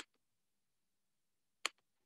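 Two sharp clicks about a second and a half apart, each followed at once by a fainter second click, against near silence.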